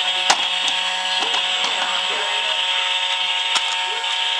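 Battery-powered toy kitchen stove playing a steady electronic cooking sound effect, a hissing sound with a few fixed tones in it. A sharp click comes just after the start and another near the end, from the toy's parts being handled.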